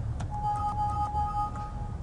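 A short electronic tone: two steady pitches sounding together for about a second and a half, just after a click, over a low room hum.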